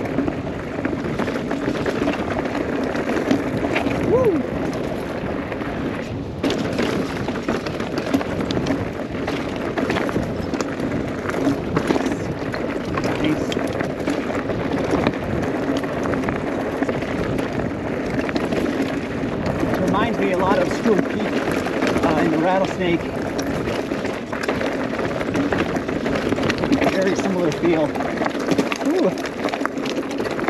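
Mountain bike rolling down a narrow dirt singletrack: steady tyre and frame rattle with frequent knocks over bumps, and a few brief squeals about four seconds in and again around twenty seconds in.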